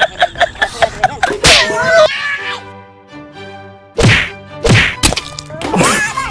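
Dubbed cartoon-style comedy sound effects: a quick bouncy musical effect breaks off with a loud hit about a second and a half in, a short tonal jingle follows, then a run of sharp whack hits over the last two seconds.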